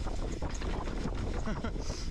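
Mountain bike riding over a rough, rocky trail: tyres clattering over rock and leaf litter and the bike rattling over the bumps. Wind and rumble buffet the helmet-mounted camera's microphone.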